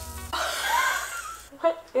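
Pancake batter sizzling on an overheated griddle just after the pancake is flipped, a hiss that swells for about a second. A short vocal sound runs over it, background music plays underneath, and speech starts near the end.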